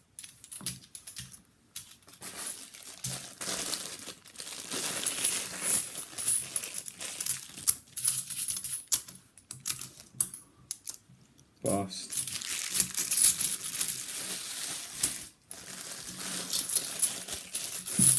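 £2 coins clinking and sliding against one another as they are sorted by hand on a towel, a run of many small sharp clicks. A clear plastic coin bag crinkles as it is handled near the end.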